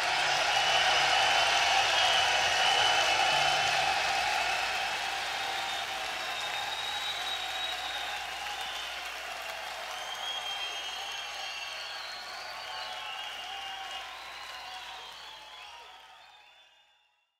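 Concert audience applauding at the end of a song, loudest in the first few seconds and then fading out steadily until it dies away near the end.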